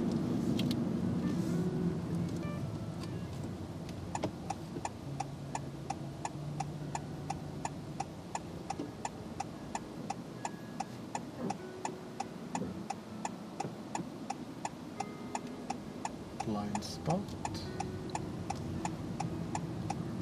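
A car's turn-signal indicator ticking steadily, roughly two and a half ticks a second, starting about four seconds in. Under it runs the car's low engine and road noise inside the cabin. The indicator is signalling a right turn off a roundabout.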